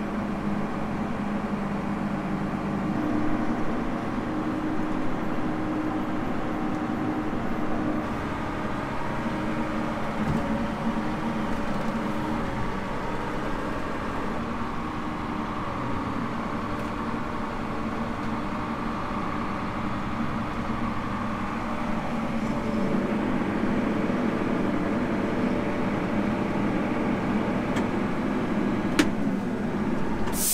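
Large farm tractor's diesel engine running steadily, heard from inside the cab, after a jump start on a dead battery.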